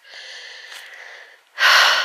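A woman breathing close to the microphone: a soft, drawn-in breath, then a loud sigh out about one and a half seconds in.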